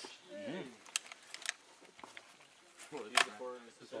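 A few sharp metallic clicks from a belt-fed machine gun on a firing stand being handled, under low murmured voices.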